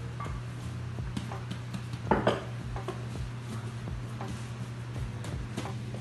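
Glass mixing bowl knocking and clinking against a countertop as risen bread dough is handled and turned out of it, with a louder knock about two seconds in.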